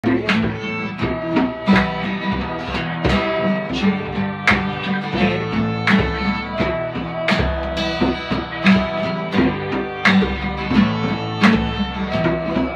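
A fiddle and two acoustic guitars playing a tune together: the guitars strum a steady rhythm of sharp strokes while the fiddle is bowed in held melody notes over them.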